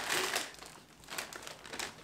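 Plastic shopping bags and a crisp packet crinkling as they are handled, a quiet scatter of small crackles.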